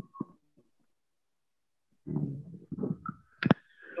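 A pause in a man's speech over a video call: near silence with a couple of faint clicks, then about halfway through some brief muffled hesitation sounds and a single sharp click near the end.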